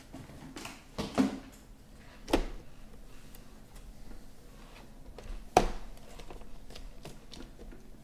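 Sealed cardboard trading-card boxes being handled and set down on a table: a few sharp knocks, the loudest about five and a half seconds in, with quieter handling noise between.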